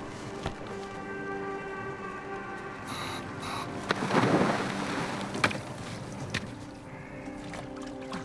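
Steady background music. About four seconds in, a loud splash as a diver jumps feet-first from a boat into the sea.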